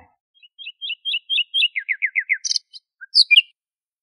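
A songbird singing: a quick run of short, evenly spaced chirps, then several downward-slurred whistled notes, ending in a few high, sharp notes.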